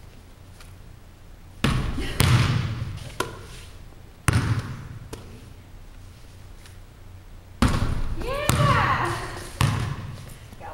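A basketball banging on a hardwood gym floor as it is shot and bounces, with a few sudden bangs about two seconds in, at about four seconds and in the last two and a half seconds, each echoing in the gym.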